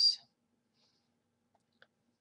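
Near silence with two faint, short clicks about a second and a half in.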